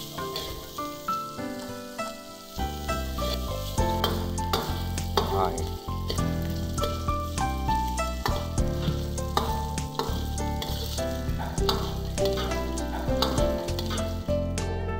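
Diced pork fat frying in a wok over low heat, sizzling steadily as it renders into lard and cracklings, with a metal ladle stirring and scraping against the wok.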